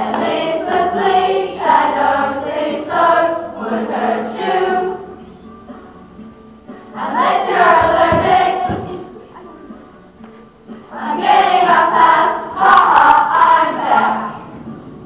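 A group of young voices singing together as a choir, in three phrases with short pauses between them, about five and ten seconds in.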